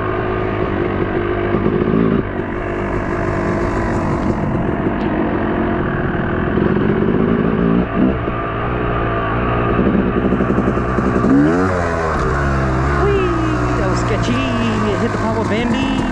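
Yamaha YZ250 two-stroke dirt bike engine running under way, its revs rising and falling with the throttle. About eleven seconds in the revs drop sharply and climb straight back.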